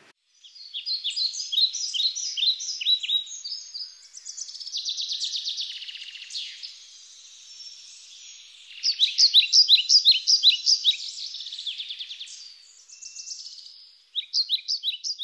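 Birdsong: small birds singing quick series of high chirps, with a fast buzzy trill in between. The loudest run of chirps comes just past the middle.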